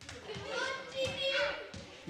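Children playing: excited children's voices and calls, with a woman's voice among them, and a few soft thumps of a rubber ball bouncing on the floor.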